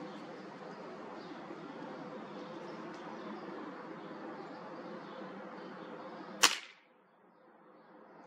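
A .22 Gamo Magnum Gen 2 break-barrel air rifle firing a single H&N 21-grain slug: one sharp crack about six and a half seconds in, over a steady background hiss.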